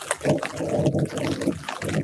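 Light rain pattering and dripping on citrus leaves, picked up close by binaural mics. A louder, lower sound rises over it shortly after the start and fades out near the end.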